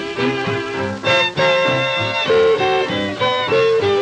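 Western swing string band from a 1947 King 78 rpm record playing an instrumental passage, with held and sliding notes from a fiddle-led string section.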